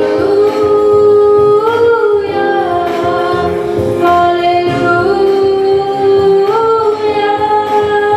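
A boy singing a worship song into a microphone in a high, unbroken voice, holding long notes that step up and down in pitch, over electronic keyboard accompaniment with a steady beat.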